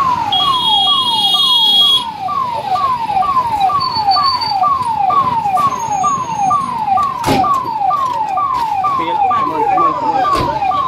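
Fire engine siren wailing in a fast repeating pattern, each call falling in pitch, about two a second. A single knock comes about seven seconds in.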